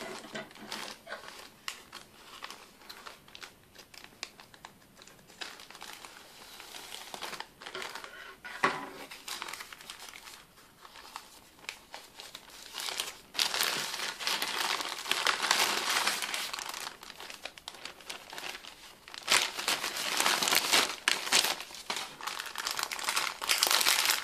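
Thin plastic mail packaging crinkling and rustling as it is handled and opened by hand: first a grey polyethylene courier mailer, then a clear plastic inner bag. It is fairly quiet at first, with one sharp crackle a little before halfway, then much louder rustling in long stretches through the second half.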